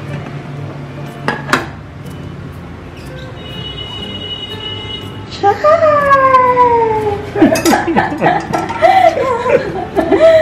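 A metal cake pan clinks twice against a ceramic plate as it is lifted off a freshly turned-out cake. A little later comes a long falling vocal 'ooh', then more excited wordless voice sounds.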